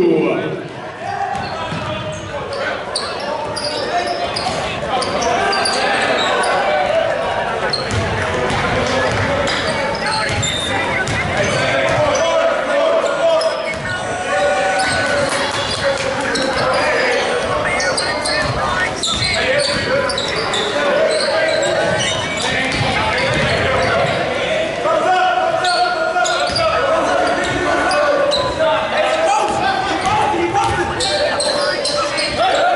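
A basketball being dribbled on a hardwood gym floor amid indistinct voices of players and spectators, all echoing in a large hall.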